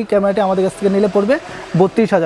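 A man speaking, close to the microphone, with a brief pause a little past halfway.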